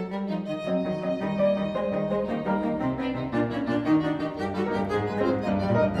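Piano trio of violin, cello and piano playing a fast scherzo (Presto) passage, with busy, quickly changing notes at a steady loudness.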